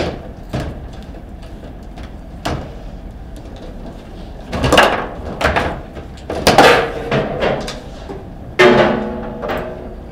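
Table football play: the ball and rods knocking against the foosball table's figures and walls in sharp, irregular cracks, with busier clatter in the middle and a loud clank with a short ringing tone near the end.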